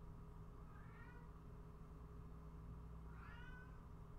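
A house cat meowing twice, faintly: a short call about a second in and a longer one near the end, each rising in pitch. A steady low hum runs underneath.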